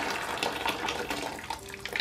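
Very hot water poured from an electric kettle into a plastic bucket: a steady splashing stream that weakens towards the end as the pour thins.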